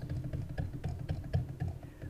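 Computer keyboard keys being pressed in a scattered run of light clicks, over a steady low hum.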